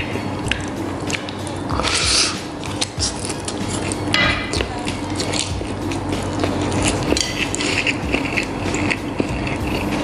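A man slurping and chewing instant noodles, with short slurps at about two and four seconds in and small clicks of chopsticks against the plate.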